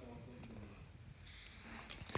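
Small plastic toy stamp being pressed against a painted wall: a faint click about half a second in, then a brief scuffing noise near the end.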